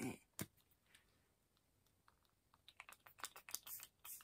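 Small pump-action setting-spray bottle spritzed in a quick run of short, hissy sprays and pump clicks, starting about two and a half seconds in.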